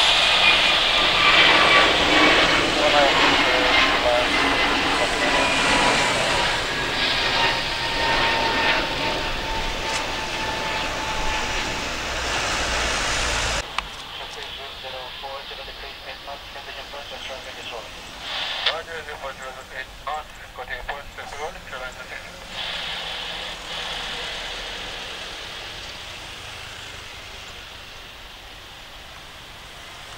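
Airbus A321 jet engines at takeoff thrust during climb-out, loud, with whining fan tones gliding down in pitch as the aircraft passes and draws away. About halfway through the sound cuts to a much quieter, distant rumble of a Boeing 777-300ER's jet engines on its takeoff roll.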